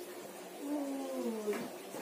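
A woman's drawn-out moan, about a second long and falling in pitch, while her shoulders are kneaded in a massage.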